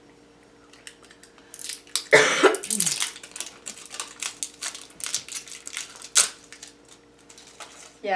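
A cough about two seconds in, then several seconds of irregular crinkling and clicking as a plastic candy wrapper is handled.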